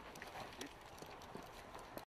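Faint, scattered knocks, scuffs and rustling from a climber's boots and gear brushing against snow and bare branches during a rope descent.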